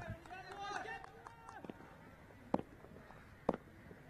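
Faint voices of players calling out on the field, then two sharp knocks about a second apart over quiet open-air ground noise.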